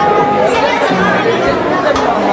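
Several people talking over one another at a dinner table, a steady babble of conversation.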